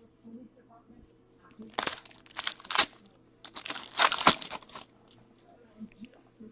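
Foil wrapper of a hockey card pack crinkling and tearing as it is opened by hand, in irregular crackly bursts between about two and five seconds in.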